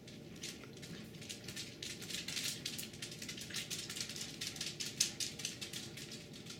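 A rapid, irregular patter of faint ticks, thickening after a couple of seconds, with one sharper tick about five seconds in.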